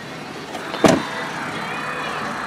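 A pickup truck's rear door shut with one solid thud a little under a second in, followed by a faint steady motor whir from the power running boards.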